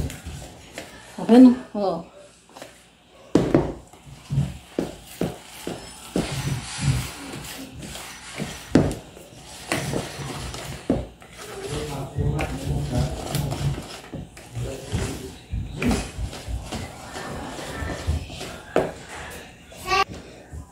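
A wire whisk beats cake batter by hand in a bowl, its strokes making uneven knocks against the bowl about twice a second. A voice is heard briefly about a second in.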